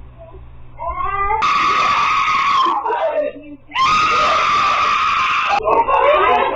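A woman screaming in two long, high shrieks, the second one longer, with other voices overlapping between and after them.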